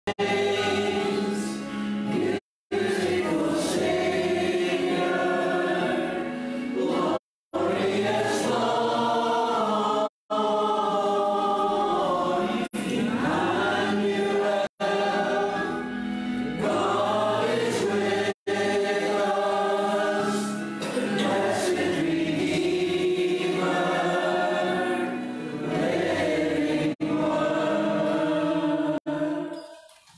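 Recorded hymn sung by a choir with accompaniment, played back over a speaker, steady throughout but cut by several brief silent dropouts.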